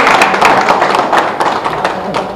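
Applause from a small group of people, many hands clapping at once, dying down near the end.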